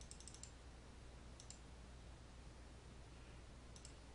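Faint computer mouse clicks over a low steady hum: a quick run of about five clicks at the start, two more about a second and a half in, and a double click near the end.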